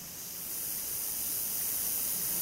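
Steady background hiss from the recording with a faint low hum, growing slightly louder over the two seconds.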